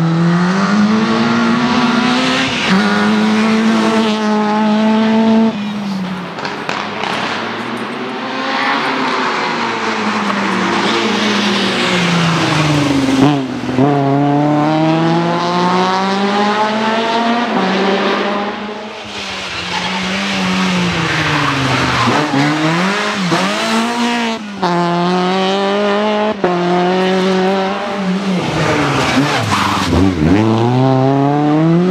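Škoda Fabia R2 rally car engine revving hard and shifting gear repeatedly as the car drives a stage at speed, its pitch climbing and then dropping with each shift. The pitch falls steeply as the car passes, about 13 seconds in and again near the end.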